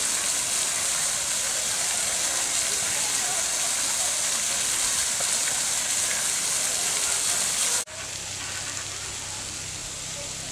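Artificial waterfall splashing steadily into a pond, a loud even rush of water. Near the end it cuts to a quieter hiss with a low steady hum.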